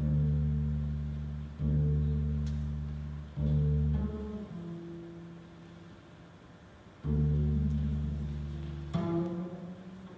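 Double bass playing long, low notes, each beginning with a strong attack and then fading, about a second and a half apart; a softer, higher note sounds in the middle, and a fresh attack comes near the end.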